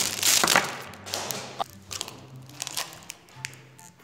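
A plastic snack-bar wrapper is crinkled and torn open, loudest in the first second, followed by quieter scattered clicks of handling and chewing. Soft background music plays underneath.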